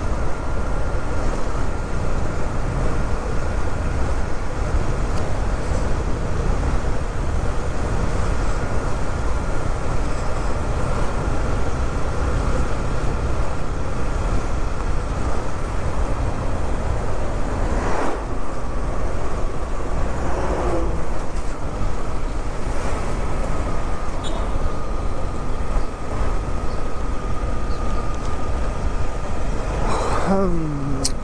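Wind rushing over the microphone of a moving motorcycle, with the engine running steadily underneath and a faint steady whine. A short sharp sound comes about two-thirds of the way through.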